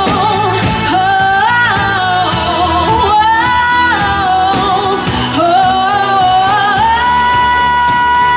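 Live band playing a song on keyboards, guitars and drums. Over it runs a lead melody of held and sliding notes that settles into a long held note near the end.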